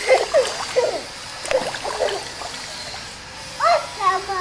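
Water splashing and sloshing around people moving in a pond, in short irregular bursts during the first two seconds, then quieter. A brief high voice sound rises near the end.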